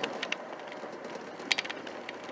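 In-cab noise of a 1995 Ford Ranger pickup on the move: steady engine and road hum from its 2.5 L four-cylinder, with a few sharp clicks about a second and a half in.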